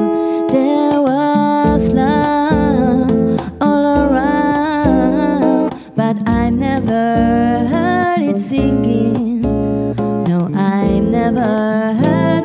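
Live music: a woman singing a wordless melody into a microphone over a hollow-body electric guitar playing chords and low bass notes.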